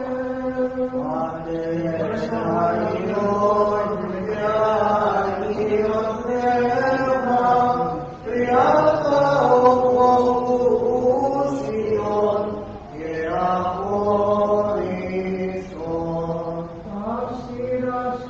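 A single voice chanting Byzantine liturgical chant in long, drawn-out melodic phrases with brief pauses between them.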